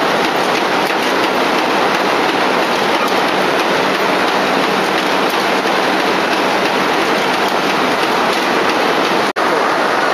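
Automatic silk reeling machine running, a loud, steady, dense mechanical noise without pauses. The sound drops out for an instant near the end.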